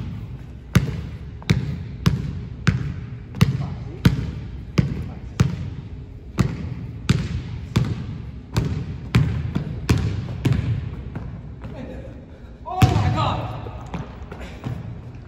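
Basketball dribbled on a hardwood gym floor: about fifteen steady bounces, roughly one every two-thirds of a second, each ringing in the echo of a large gym. The bouncing stops for about a second and a half, then a louder thump comes with a brief voice near the end.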